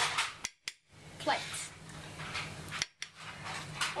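A spoon knocking and scraping against an enamel pot and china plates as mashed potato is served out, with a few sharp clinks over a steady low hum.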